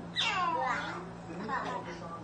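Small children laughing, with a high-pitched squeal that glides down in pitch just after the start and a shorter burst of laughter near the end.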